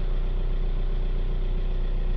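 Ford Transit Connect's 1.5-litre four-cylinder turbodiesel idling steadily, heard from inside the cab.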